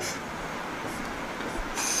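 Steady background noise, a hum and hiss with no distinct strokes or events.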